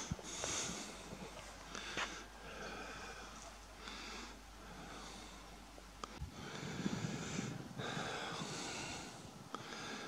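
Faint, quick breathing close to the microphone: short hissy breaths at about one a second.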